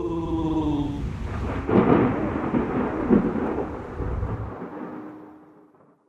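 Thunder-like rumble sound effect in a podcast segment stinger, fading away to silence near the end. It opens under the falling tail of an echoed voice effect.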